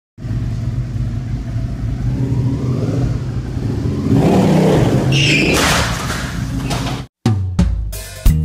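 Motorcycle engine running inside a room, revved up about four seconds in and then settling back. Near the end it cuts off abruptly and a short music jingle begins.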